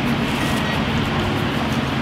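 Steady rushing noise of a small stream's running water, with a low steady hum underneath.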